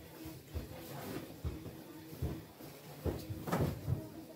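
Soft knocks and thumps at irregular intervals, the loudest cluster about three and a half seconds in.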